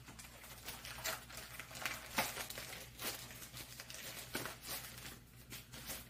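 Plastic packaging crinkling and rustling as it is handled, in irregular crackles with a few sharper ones about two and three seconds in.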